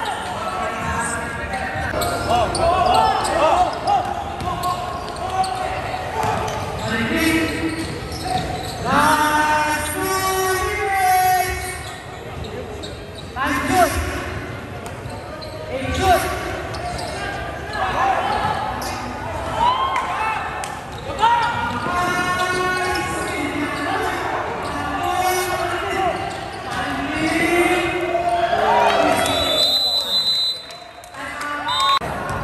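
Basketball game in a large gym: a ball bouncing on the wooden court, with a few sharper, louder knocks, and players and spectators calling out throughout.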